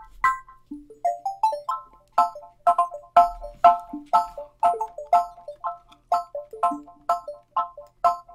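Plucked synth melody playing back from a beat being made: short, bell-like staccato notes that start sharply and die away fast, in a bouncy loop of about two main notes a second with quicker notes between.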